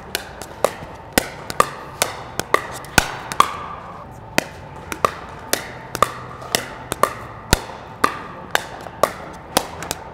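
Pickleball paddles volleying a plastic pickleball back and forth in a fast exchange. Sharp pops come about two a second, each with a brief ringing ping.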